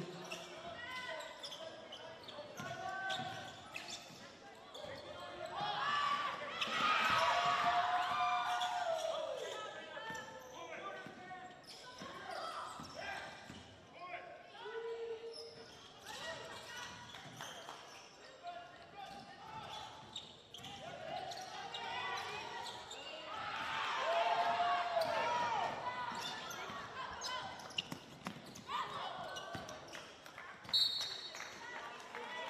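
A basketball being dribbled on a hardwood gym court, with scattered knocks of play and voices of players and spectators in a large hall. The voices swell twice, about six seconds in and again about twenty-three seconds in.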